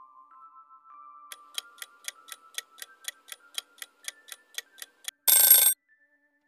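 Countdown-timer sound effect: soft held tones stepping up in pitch, then clock-like ticking about four times a second from about a second in. Near the end it breaks off into a short, loud alarm-like burst marking time up.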